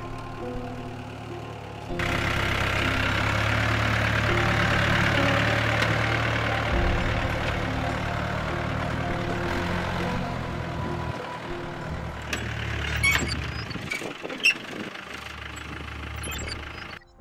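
Engine of an olive-green soft-top military jeep running as it drives along a dirt track. It comes in suddenly about two seconds in and eases off a few seconds before the end, followed by a few clicks and one sharp knock near the end.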